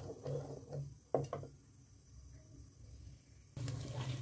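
Faint stirring of onion paste frying in oil in a clay pot, with two light spatula knocks about a second in, then near silence. Shortly before the end, frying oil starts to sizzle suddenly.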